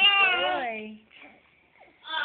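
A baby's long, high-pitched vocalization that falls in pitch and stops about a second in.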